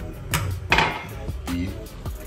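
Background music with a beat, over two sharp knocks in the first second as kitchenware is handled on a stone counter; the second knock is the louder.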